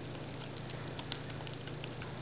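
A dachshund eating soft food off a plate, licking and chewing with scattered small wet clicks and smacks, several a second.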